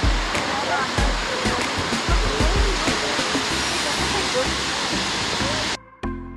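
Laurel Falls' cascade rushing steadily, heard live at the pool, with people's voices faint under it and occasional low thumps; the sound cuts off abruptly near the end.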